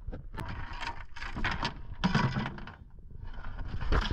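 Anchor gear at a boat's bow: irregular clicks and rattles of chain and metal fittings over a noisy background, with a brief low mechanical hum about halfway through, as the muddy anchor is brought up at the bow roller.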